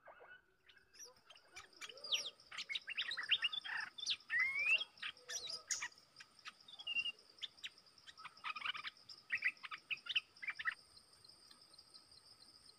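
Bulbuls calling: quick runs of short, sweeping whistled notes and chatter, heaviest between about two and five seconds in and again around nine to ten seconds, stopping just before the end. A steady high insect drone runs underneath.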